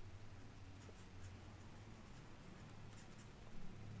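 Faint scratching and tapping of a stylus writing on a pen tablet, over a low steady hum.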